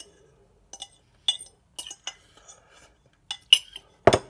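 Metal utensil clinking and scraping against a bowl as the last bites are scooped up: a string of short, sharp clinks, about one every half second.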